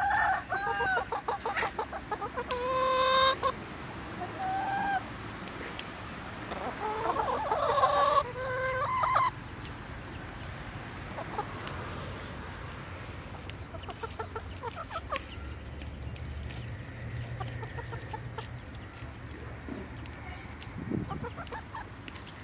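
Domestic chickens clucking and calling, loud and frequent for the first nine seconds or so, then only faint scattered calls with light ticks of beaks pecking at grain.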